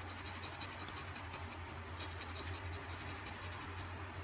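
A coin scratching the coating off a lottery scratch-off ticket on a wooden table, in quick rapid back-and-forth strokes.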